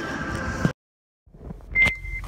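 Faint background hubbub that cuts off dead at an edit. After about half a second of silence, a new recording starts with a sharp knock and a short, steady high beep.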